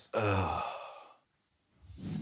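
A man's long laughing sigh, his voice falling and fading over about a second, then a sudden cut to silence.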